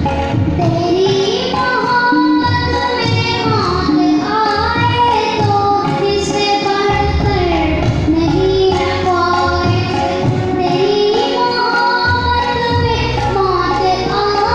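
A boy singing a song into a handheld microphone, his voice amplified over loudspeakers. He sings long held notes that slide up and down in pitch.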